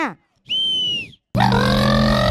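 A single high-pitched whistle blast of under a second, the start signal for a race. Just after it, loud music with a sustained, brassy-sounding chord comes in.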